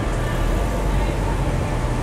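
Steady city traffic noise: the low rumble of road vehicles passing on a downtown street.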